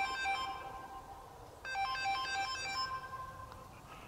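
Smartphone ringing with a melodic ringtone for an incoming call: a short tune of quick notes plays, pauses for about a second, then plays again.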